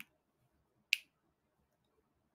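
A single short, sharp click about a second in; otherwise near silence.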